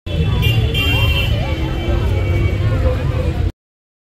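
Low, steady road and engine rumble heard inside a moving car, with a brief high tone about half a second in; the sound stops abruptly about three and a half seconds in.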